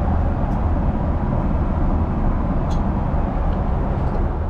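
Steady in-flight airliner cabin noise: the low rumble of the jet engines and rushing air, heard from inside the cabin, with two faint clicks.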